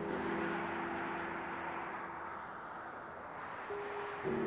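Soft background music: a low held chord of several sustained notes that fades slowly, with a new chord entering near the end. Under it runs a steady wash of street traffic noise.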